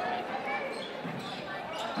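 A basketball dribbled on a hardwood gym court, heard faintly over a low, steady gym background.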